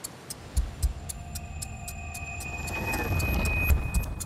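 Trailer sound design: a clock ticking about three times a second over deep booms and swelling music with a steady high tone, building in loudness to a peak near the end.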